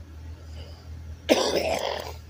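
A person gives one loud cough a little over a second in, over the low steady hum of an idling minibus engine.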